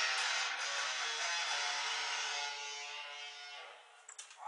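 Guitar strummed a couple of times, then a chord left ringing and slowly fading out.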